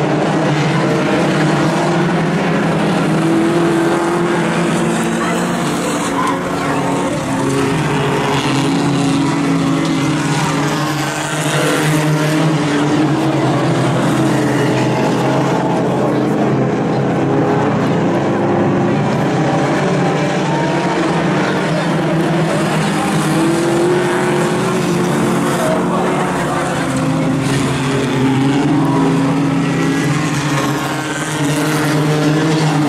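Engines of several compact Outlaw Tuner race cars running laps on a dirt oval, several engine notes overlapping and rising and falling in pitch as the cars accelerate and lift.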